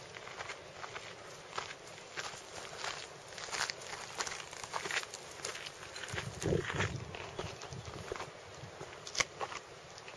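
Irregular short clicks and crackles, with a brief low rumble about six and a half seconds in.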